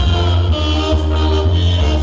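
Mexican banda (brass band) music, loud and steady, with a strong bass line under sustained horn notes.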